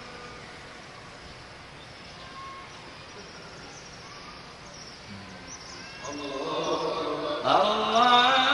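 A faint steady hum from the vast prayer hall while the congregation is silent. About six seconds in, a man's amplified voice begins a long chanted takbir ("Allahu akbar") that grows loud near the end, marking the change to the next prayer posture.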